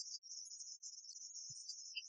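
Faint, high-pitched warbling hiss with no music playing, typical of cassette tape hiss in a gap of a bootleg tape transfer. A single soft low thump comes about one and a half seconds in.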